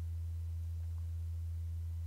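A steady low electrical hum, one unchanging low tone with nothing else over it.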